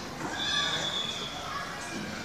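A high-pitched squeal from a young voice, held for about a second, over background voices.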